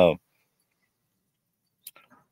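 A man's drawn-out "um" trailing off with a falling pitch, then dead silence broken only by one faint short click near the end.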